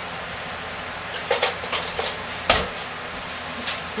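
Handling noise as a spatula is fetched: a few light clicks and one louder knock about halfway through, over a steady background hum.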